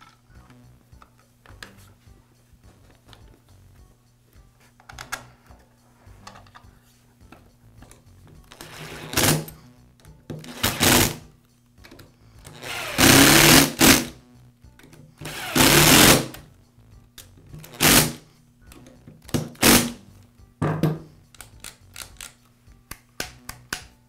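Screwdriver driving the screws that secure the plastic top housing of a Porter Cable router: a series of loud bursts of a second or so, the longest about 13 seconds in, then a quick run of small clicks near the end.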